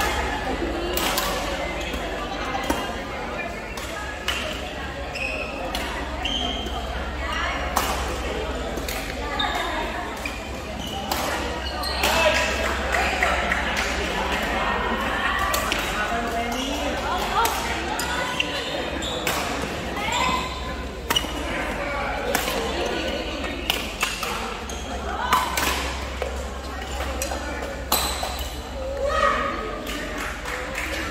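Badminton rally in a large sports hall: sharp racket strikes on the shuttlecock come at irregular intervals, mixed with brief squeaks of court shoes, over the chatter of voices in the hall.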